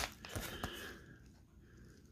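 Brief rustling of a paper padded mailer and an index card being handled and pulled out, a few soft clicks in the first second, then near silence.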